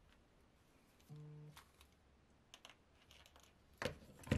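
Quiet, scattered small clicks and ticks of hand stitching: needles and linen thread being worked and pulled through the punched holes of a leather wrap, with the sharpest click near the end. A brief low hum about a second in.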